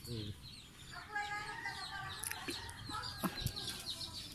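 Birds calling. A drawn-out call with several overtones comes about a second in and lasts about a second, over small high chirps, with a single sharp click late on.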